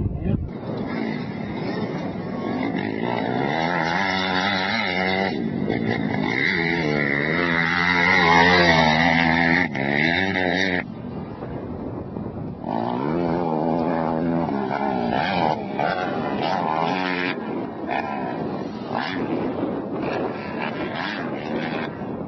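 Four-stroke motocross bike engine revving hard, its pitch climbing and dropping again and again as the throttle is opened and chopped, with short breaks about five and eleven seconds in. It is loudest around eight to nine seconds in.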